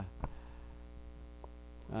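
Steady low electrical mains hum in the microphone and sound system, with a couple of faint clicks early in the pause.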